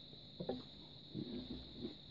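Faint mouth sounds of a person eating a bite of a peanut butter Twix bar, with a few short, quiet murmurs.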